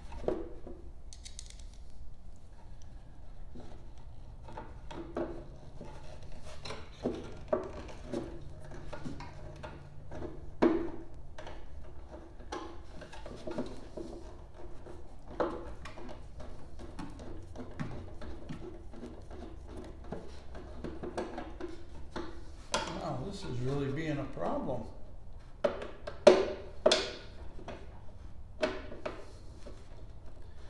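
A riding mower's plastic battery box cover being worked into place by hand: irregular clicks, taps and knocks as its screws are worked into line with the holes, a couple of sharper knocks near the middle and near the end.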